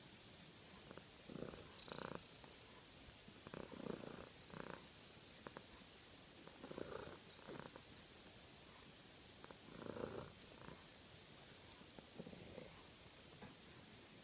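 A tortoiseshell cat purring faintly as it is stroked, the purr coming and going in soft, uneven swells.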